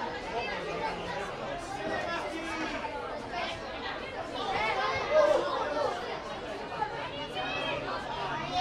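Many overlapping voices chattering around a football pitch, with no clear words, and one louder call about five seconds in.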